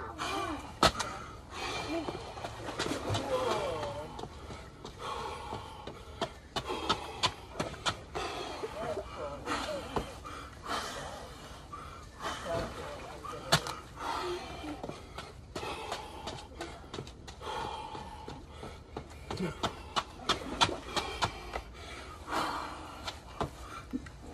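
Indistinct voices that are not clear enough to make out words, with scattered sharp clicks and knocks.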